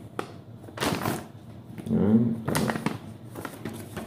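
Paper rustling and crackling as a folded printed user manual is unfolded and handled, in a few short bursts, the loudest about a second in.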